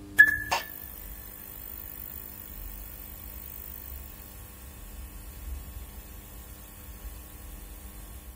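Neon-sign sound effect: a sharp click with a brief high ping just after the start, a second click a moment later, then a steady low electrical hum with faint hiss.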